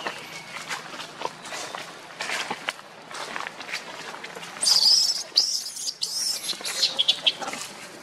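Baby long-tailed macaque squealing: one loud, high-pitched cry about halfway through, then a run of shorter high squeals, over scattered light clicks and rustles.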